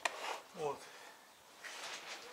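A soft click as a pork tenderloin is set into a plastic crate, followed by a brief falling vocal sound from a person; otherwise quiet.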